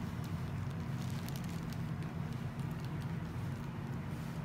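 Steady low hum of background room or equipment noise, with a few faint scattered clicks.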